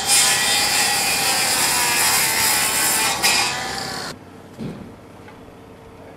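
Milwaukee circular saw cutting through a wooden 2x4, a loud steady whine with the grind of the blade in the wood, stopping abruptly about four seconds in. A single dull thump follows in the quieter remainder.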